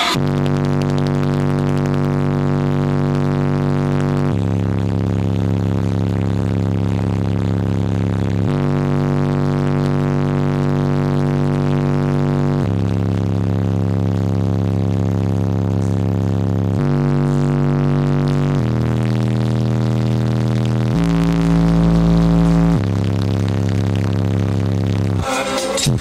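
Bass-heavy music played loud through a car stereo with six 15-inch subwoofers, heard inside the vehicle's cabin. It is made of long held low notes, each lasting about four seconds before stepping to another pitch, with a louder, deeper note near the end.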